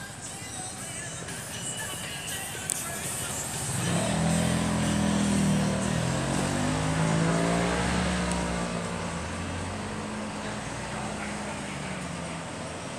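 Street traffic noise, then from about four seconds in a vehicle engine running close by, its pitch slowly rising and falling.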